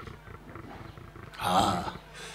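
Faint room noise, then a single brief, loud roar-like cry about one and a half seconds in.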